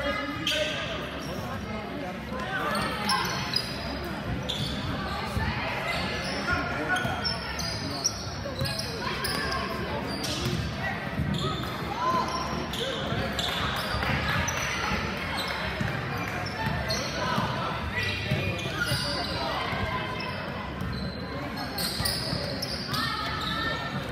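A basketball bouncing on the court, with players and spectators calling out, all echoing in a large gym.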